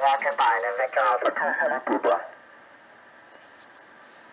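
A ham radio operator's voice received in single sideband through the BITX40 transceiver's speaker, sounding thin and narrow. The voice stops a little after two seconds in, leaving a steady faint receiver hiss while the set is tuned.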